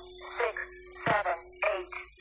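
Outro music: a held note under a string of short, downward-sliding voice-like swoops, about two a second.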